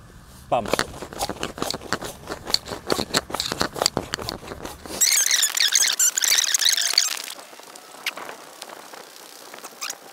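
Built-in hand pump of an inflatable nylon TPU sleeping pad being pressed over and over, with quick rustling, crinkling strokes as air is pushed in. About five seconds in, a high squealing, chirping sound comes in for about two seconds.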